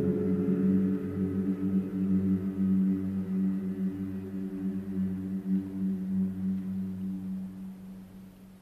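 Choral chant ending: low male voices hold a long sustained chord that slowly fades away toward the end.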